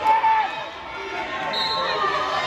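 Spectators' voices calling out across a gym during a wrestling bout, with one held shout at the start. A brief high-pitched squeak sounds near the end.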